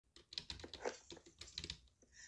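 A quick, irregular run of light clicks and taps, about seven or eight a second.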